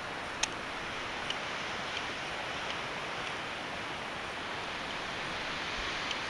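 A steady, even hiss of outdoor ambience by a mountain lake, with a sharp click about half a second in and a few faint ticks after it.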